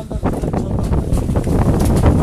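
Strong wind buffeting a phone's microphone, a loud, uneven low rumble.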